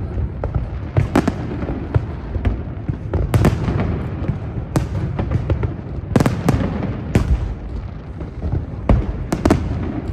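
Aerial firework shells bursting in an irregular string of sharp bangs, the loudest a second or more apart, over a continuous low rumble of further bursts.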